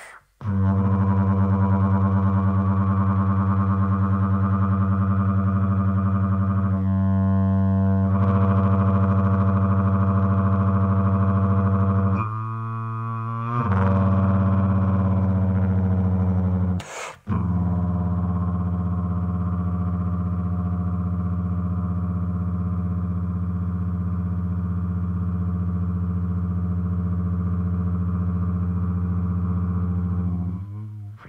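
Instrumental music: a sustained, loud low drone built from a stack of steady tones. It wavers briefly about a quarter of the way in and again before halfway, then cuts out for a moment just past halfway before resuming.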